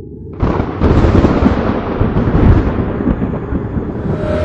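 Thunder: a low rumble swells, then a loud crash breaks about half a second in and rolls on as a heavy rumble.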